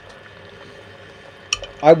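Faint, steady hiss with a gurgle, which the hosts take to be the Keurig coffee maker. A sharp clink about one and a half seconds in, then a voice.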